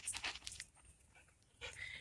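Faint panting of a dog: a few quick breaths at the start and again near the end.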